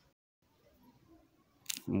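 Faint room tone with a brief moment of dead silence, then a short hiss and a voice beginning to speak near the end.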